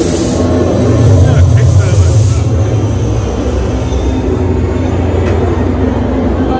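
Loud haunted-house sound effects: a steady low rumbling drone with bursts of hiss at the start and again from about one and a half to two and a half seconds in.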